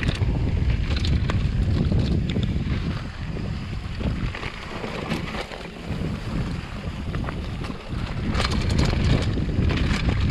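Wind rushing over the microphone and knobby tyres rumbling on a dirt singletrack during a fast mountain-bike descent, with scattered clicks and rattles from the bike over bumps.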